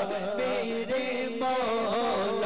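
Naat sung by a solo male voice in a drawn-out, ornamented devotional melody, over a steady low drone.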